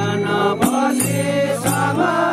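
Group of men singing a traditional chant-like folk song together, with barrel-shaped hand drums beaten at uneven intervals under the voices.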